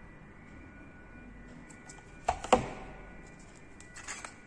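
Hot glue gun set down on a wooden tabletop: two quick knocks a quarter-second apart, about two and a half seconds in.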